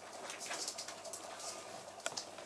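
Sheltie puppies scampering and scrabbling on a rug and wooden floor: a run of quick, faint scratches and patters of claws and paws.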